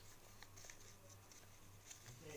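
Faint rustle and soft ticks of a sheet of white paper being handled and creased by hand, over a steady low hum.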